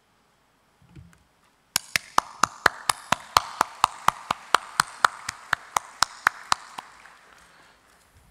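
Audience applauding, with one pair of hands clapping loudly and evenly close to the microphone at about four to five claps a second over the softer clapping of the crowd. The applause starts just under two seconds in after a brief silence and fades out near the end, and there is a low thump about a second in.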